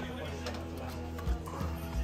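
Background music with a low, steady bass line and a few soft beats.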